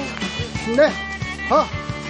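A woman's short voiced huffs of breath while running out of breath, two of them about a second apart, over background music.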